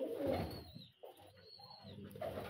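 Faint low cooing of domestic pigeons in a small loft: cooing in the first half second or so, then near quiet, with a little more cooing near the end.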